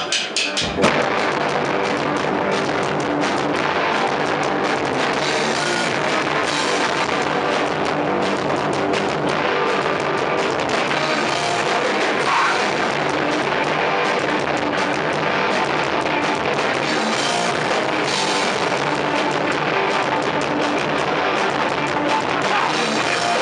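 Hardcore band playing live at full volume, with drums and distorted guitars. The song kicks in about a second in and then runs dense and steady.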